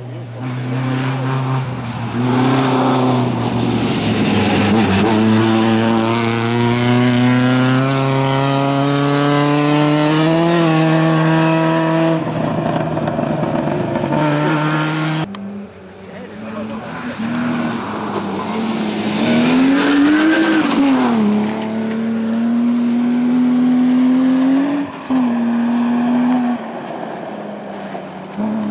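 Two rally cars on a gravel stage, one after the other, each engine accelerating hard, its pitch climbing and dipping at the gear changes. The first car's sound breaks off suddenly about halfway through, and the second car's engine takes over.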